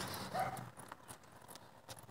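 Faint, scattered footsteps and light clicks of a person and a leashed dog turning around on a road.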